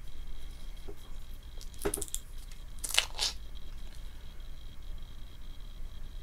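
A utensil scooping soft cream cheese (requeijão): two brief scraping, squishing sounds about two and three seconds in, over a faint steady low hum.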